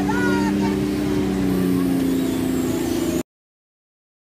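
A large truck's engine running steadily at idle, with raised voices briefly over it in the first second. The sound cuts off abruptly a little after three seconds.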